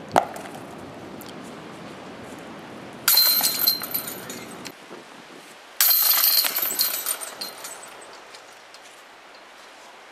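A sharp clack near the start, then two loud metallic jangles of disc golf basket chains, about three and six seconds in, as discs hit the chains. Each jangle dies away over a second or two.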